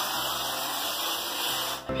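Aerosol can of whipped cream spraying in one long steady hiss that cuts off just before the end, over background music.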